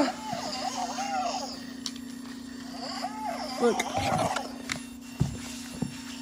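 Boxer toy robot making its electronic warbling voice sounds over a steady low hum, with a few sharp knocks near the end.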